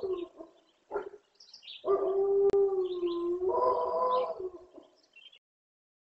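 A lone gray wolf howling, agitated and unanswered by the rest of the pack: the end of one howl, a brief call about a second in, then a long steady howl that steps up in pitch partway through and fades out about five seconds in.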